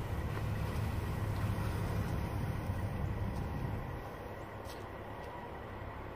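Steady low rumble of an idling engine, a little quieter from about four seconds in.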